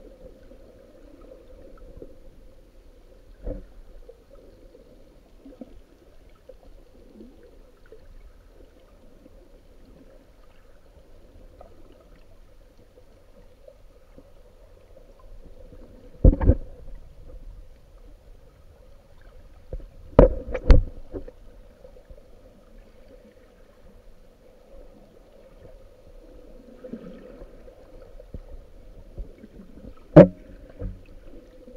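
Underwater ambience picked up by a camera held below the surface in shallow water: a steady muffled rush with a faint hum. It is broken by a few sharp knocks, one about three seconds in, a loud one about sixteen seconds in, and two close together about twenty seconds in.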